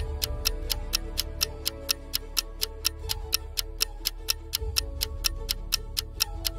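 Countdown-timer ticking sound effect, sharp clock-like ticks at about four a second, over steady background music. It marks the thinking time running out for a puzzle.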